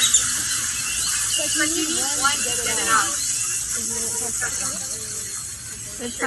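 Several people talking indistinctly in the background, over a steady high hiss.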